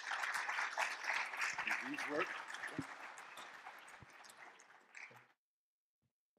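Audience applauding, the clapping dying away gradually over about five seconds before cutting off suddenly.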